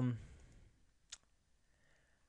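A single short computer mouse click about a second in.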